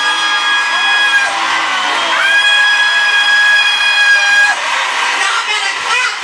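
A voice holding a long, high sung note twice, the second rising into place and held for about two seconds, over a noisy room. Short whoops and cheers start near the end.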